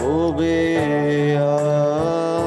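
A young man singing one long held note, sliding up into it at the start, over sustained electronic keyboard chords.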